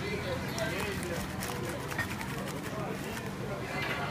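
Indistinct voices in the background, with light crinkling from a paper bag being handled, over a steady low hum.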